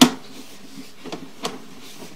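Sewer inspection camera's push cable being pulled back through the drain line: a sharp knock at the start, then a few lighter clicks and faint rubbing.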